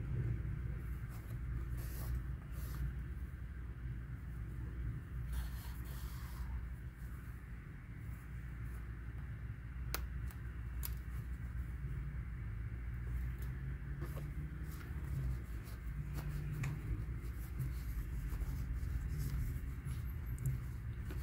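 Faint rustling and a few soft clicks of a yarn needle and yarn being worked through a crocheted doll's cap, over a steady low hum.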